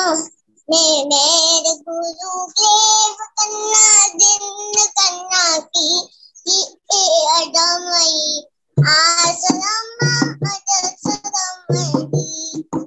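A young girl singing a devotional bhajan in long held, wavering phrases. The sound is heard through a video-call connection that cuts abruptly to silence between phrases.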